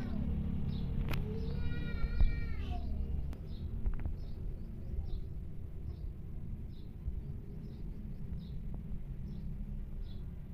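A kitten meowing: one long, high call about a second and a half in that drops in pitch at its end. A faint short chirp repeats about twice a second over a steady low rumble.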